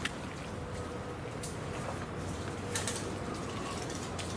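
Footsteps on a muddy mangrove trail and through leaf litter, with a few sharp crackles of twigs or leaves underfoot about a second and a half in and again near three seconds.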